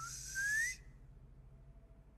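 A breathy whistle rising steadily in pitch, cutting off under a second in. Faint room tone follows.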